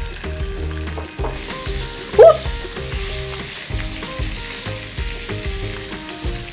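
Mackerel fillets sizzling as they pan-fry in oil, the sizzle growing louder and brighter about a second in while they are turned with a spatula and chopsticks. A brief high voice sound cuts in about two seconds in.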